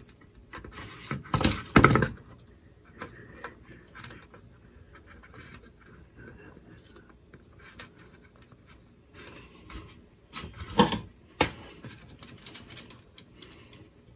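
Small handling sounds of pliers, wire and LED leads on a workbench: faint clicks and rustles, with short louder noisy bursts about a second and a half in and again near eleven seconds in, the first as needle-nose pliers cut the LED's positive lead.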